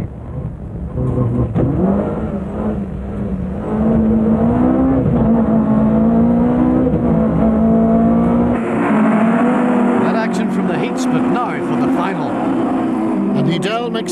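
Engine of a small rallycross hatchback heard from inside the cockpit, revving up and down as the car is driven hard through corners and gear changes.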